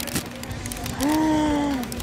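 A woman's drawn-out voiced sound of enjoyment while eating, held for about a second from roughly a second in and dipping in pitch at the end.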